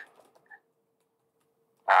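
A pause in a man's speech heard over a phone-quality line: near silence with a faint steady hum and a tiny blip about a quarter of the way in. His voice starts again at the very end.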